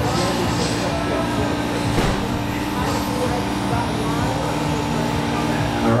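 Electric touring cars with 17.5-turn brushless motors racing around a carpet track, their motors and tyres running under a steady hum and hall chatter. A single sharp click about two seconds in.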